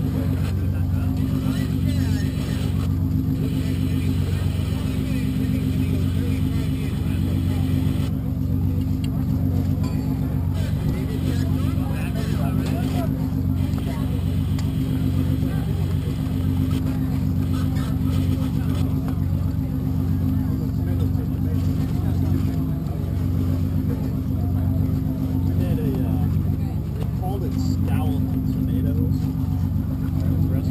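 Steady low drone of a running engine, holding an even pitch throughout, with faint indistinct voices beneath it.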